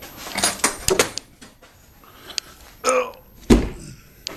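A metal latch on a wooden crate door being worked by hand, with a run of clicks and metallic rattles over the first second or so. A short creak follows near three seconds, then one loud thump.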